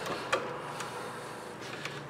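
A few faint clicks from electrical cable being handled at a plastic switch box, over quiet room tone.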